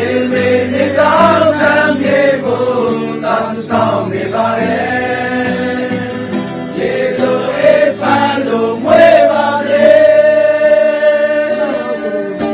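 A song: voices singing together over an accompaniment, ending on a long held note near the end.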